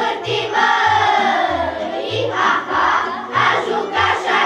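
Children's choir singing over an instrumental backing with a steady, repeating bass line.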